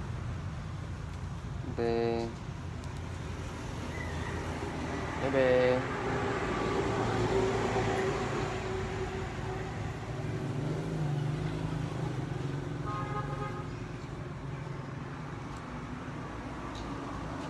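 Road traffic passing, with short pitched toots like vehicle horns about two and five and a half seconds in and another brief one near the end, over a steady low hum.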